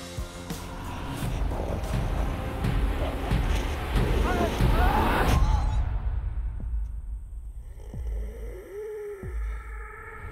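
Film trailer soundtrack: dramatic music with sound effects that builds in loudness for about five seconds and then cuts off suddenly. What is left is a low rumble, with a short pitched sound near the end.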